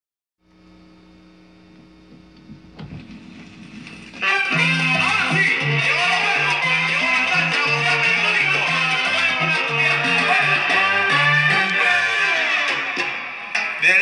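A vinyl record playing on a turntable: a few seconds of quiet lead-in with a low steady hum, then a Latin dance song with guitar and bass starts loudly about four seconds in.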